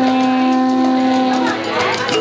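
Soprano saxophone holding one long, steady note for most of the time, then sliding into a few new notes near the end.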